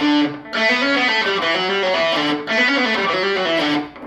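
Distorted electric guitar playing a fast hard-rock lead phrase of quickly changing single notes, with brief breaks about half a second and two and a half seconds in.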